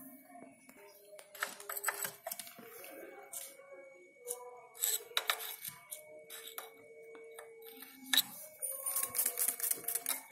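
Light, irregular metallic clicks and ticks from a Yamaha Jupiter Z1's roller drive chain being handled at the rear wheel while its slack is checked after adjustment.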